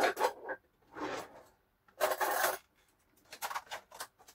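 Hands rummaging and handling a small item: irregular rustling and scraping, in short bursts, the loudest about two seconds in.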